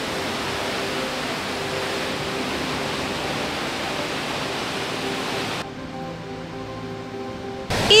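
Steady rushing of a waterfall over soft background music. The water noise cuts off abruptly about five and a half seconds in, leaving only the music.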